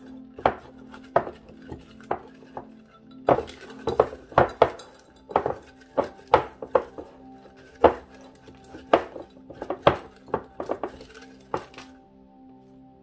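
A deck of oracle cards being shuffled by hand: irregular sharp clicks and slaps of the cards, about one or two a second. Quiet background music plays underneath.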